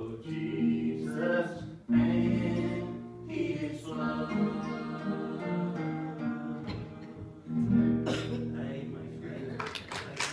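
Guitar playing a slow passage of ringing chords and single notes, with the strongest strums about two seconds in and near eight seconds.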